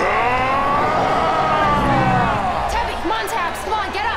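A man's long, drawn-out yell, rising and then falling in pitch, over about two and a half seconds. Near the end it gives way to short whoops and cheers from a crowd.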